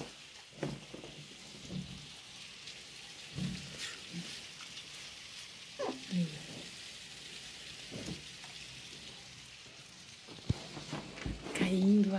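Steady rain falling, an even hiss, with a few brief faint voice sounds and a couple of small knocks near the end.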